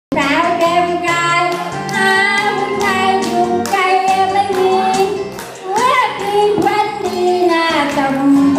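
A woman singing into a microphone over amplified backing music with a steady beat, her voice holding long wavering notes through the loudspeaker.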